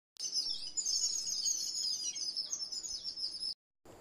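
Small birds chirping, many high chirps overlapping, which cut off abruptly near the end.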